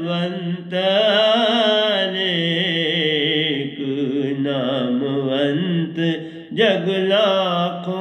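A man singing a Hindi devotional bhajan, drawing out long held notes with a wavering pitch, in three or four phrases.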